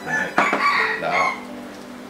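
A sharp click, then a loud harsh crowing call about a second long, broken into a few pulses, over steady background music.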